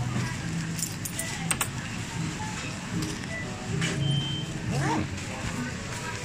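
Shop checkout ambience: background music and voices, with a few sharp clicks and clinks.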